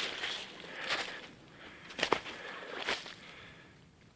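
Footsteps crunching and rustling through dry grass and brush, a few sharper crunches about a second apart, fading near the end.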